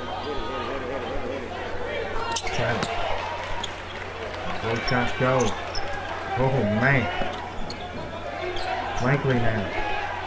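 A basketball bouncing on a hardwood gym floor during a free throw and the play that follows, over a steady crowd hubbub. Voices call out loudly three times in the second half.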